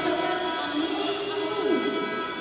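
Background music with held notes.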